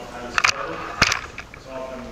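Speech, with two short sharp sounds cutting through it, one about half a second in and a louder one about a second in.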